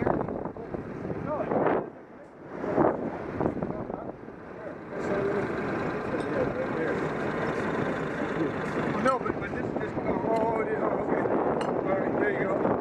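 An engine running steadily, coming in about five seconds in, under people talking.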